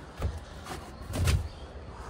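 A few soft knocks and rustles of handling as a strap and a plastic water jug are moved about in a small SUV's cargo area, the loudest a dull bump a little past the middle.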